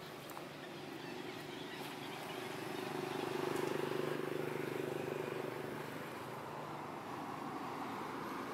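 A motor vehicle's engine droning as it passes, swelling to its loudest about halfway through and then fading.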